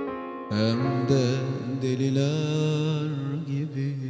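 Instrumental break in a Turkish ballad's backing music. After a short lull, a held lead melody with a wavering vibrato comes in about half a second in, over a low sustained bass note, with no singing.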